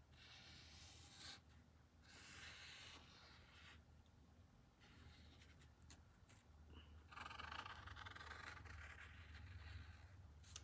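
Faint scratchy strokes of a fine paint-pen tip drawing lines on painted wood, in three short runs: about the first second, around two to three seconds in, and from about seven seconds on.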